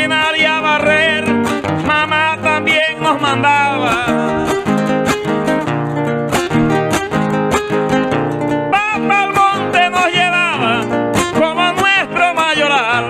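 Panamanian mesano: a man sings a long, wavering, ornamented vocal line over steadily strummed acoustic guitars.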